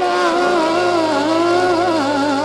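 Early-1960s pop ballad recording of vocal with chorus and orchestra: a long held sung note with a wide vibrato, with a low sustained bass note coming in about a third of the way through.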